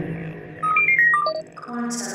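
Electronic intro sound effect: a quick run of short beeping tones jumping between pitches, then a sustained synth tone that enters near the end, joined by a bright high shimmer.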